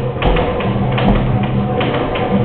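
Three dull thuds from boxers sparring in the ring, gloved punches and feet on the canvas, over steady background music.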